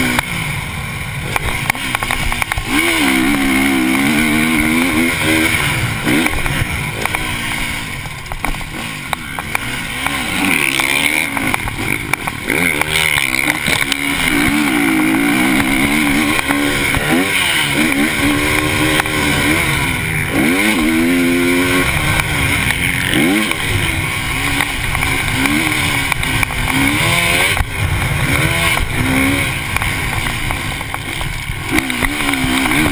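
A KTM motocross bike's engine under hard riding, revving up and dropping off again and again as the throttle is opened and closed. The pitch climbs and falls every second or two.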